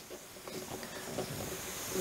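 Faint hiss of compressed air through the injection press's pressure regulator as its knob is turned up toward 50, with a few small ticks.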